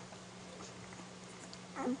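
Week-old Airedale terrier puppies nursing at their mother's teats, with faint small suckling clicks. Near the end one puppy gives a single short cry that drops in pitch, over a steady low hum.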